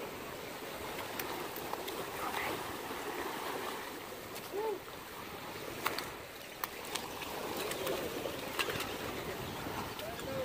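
Surf washing steadily against the granite jetty blocks. About halfway through come a few sharp slaps and taps, which fit a landed redfish flopping on the rock.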